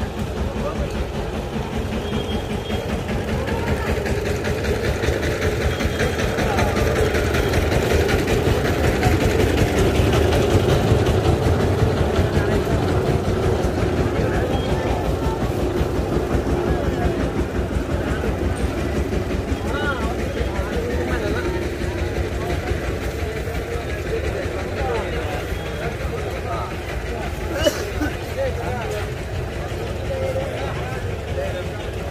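Busy open-air market crowd: many voices talking at once over a steady low rumble, with a single sharp knock near the end.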